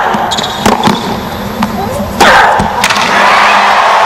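Tennis ball struck by rackets in a rally, sharp knocks in the first second. About two seconds in, a stadium crowd breaks into loud cheering and applause as the set point is won.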